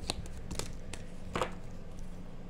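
A tarot deck being hand-shuffled: a few light card taps and slides, about four in two seconds, over a faint steady room hum.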